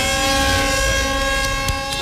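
Vehicle horns held down in long steady blasts, two or more sounding at once on different pitches; one comes in right at the start and holds throughout.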